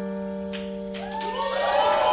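The final chord on an acoustic guitar rings out and slowly fades at the close of a song. About a second in, audience voices start up and grow louder.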